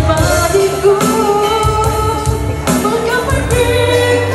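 A pop-style song: a voice sings long held, gliding notes over an instrumental backing track.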